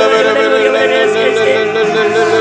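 Prayer in tongues (glossolalia) sung as a voice holding a long, steady note, with music underneath.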